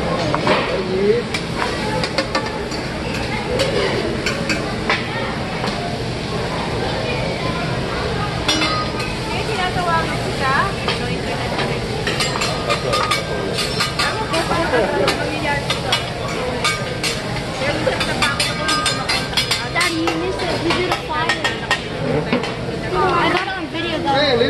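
Sliced vegetables sizzling on a steel teppanyaki griddle, with many quick metal clicks and scrapes of the chef's spatula on the hot plate, thickest through the middle of the stretch. Background voices chatter underneath.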